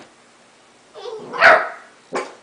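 An 11-week-old Basenji puppy gives a single loud bark about a second in.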